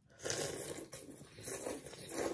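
A person slurping hot khao piak sen noodles and broth from chopsticks, in a few long noisy pulls with short breaks between them.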